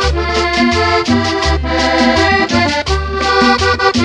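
Vallenato paseo instrumental break: a diatonic button accordion plays a chordal melody over a walking bass line and steady percussion keeping the beat.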